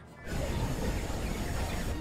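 Sci-fi space-battle sound effects: a dense rumble and hiss that comes in suddenly a moment in and holds steady.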